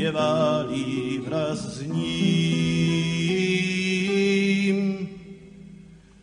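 Song: a singing voice drawing out long notes, the last one held from about two seconds in and fading away near the end.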